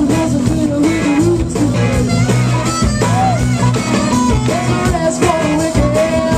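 Live soul-funk band playing: a woman singing lead over electric guitar, bass and drums, with a steady beat.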